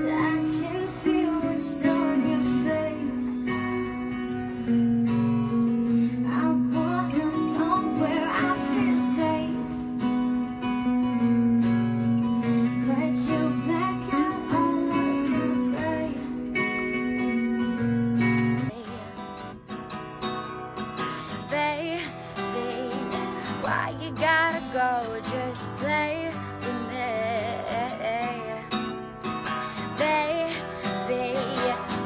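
A woman singing to acoustic guitar. About two-thirds of the way through, the heavy held low chords drop out and the accompaniment turns lighter under the voice.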